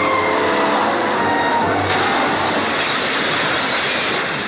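A car driving fast: a loud, steady rush of engine and road noise, with film music underneath.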